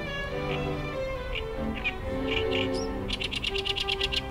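A reed warbler singing: short, separate harsh notes, then a fast rattling chatter of about ten notes a second near the end. Background music with sustained strings plays under it.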